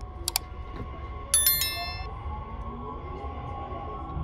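Two quick mouse clicks, then a bright bell ding from a subscribe-button sound effect, laid over a train's steady low running rumble. Under them a faint whine rises in pitch, like an electric train's motors as it gathers speed.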